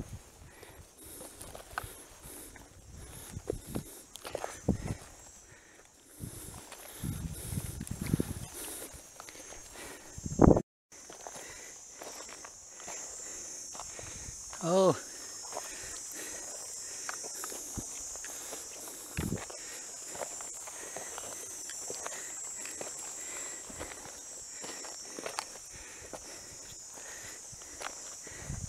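Footsteps on a dry, sandy dirt trail, with scattered knocks and brushing. About a third of the way in, a steady high-pitched insect drone sets in and runs underneath the steps.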